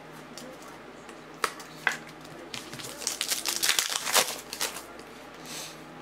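Foil trading-card pack wrappers crinkling as cards are handled and packs opened: two sharp clicks about a second and a half in, then a longer burst of crinkling through the middle.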